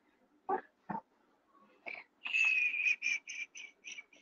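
A three-month-old baby's high-pitched squealing: one squeal held for most of a second, then a quick run of short squeaky whimpers, about five a second. Two brief sounds come before it.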